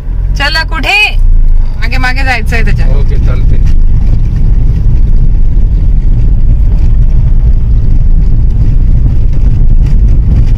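Steady, loud low rumble of a car being driven slowly, heard from inside the cabin. A few brief spoken words come in the first three seconds.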